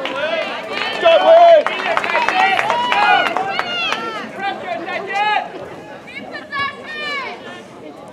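Many voices shouting and calling out at once, overlapping and unintelligible, loudest in the first half and thinning toward the end.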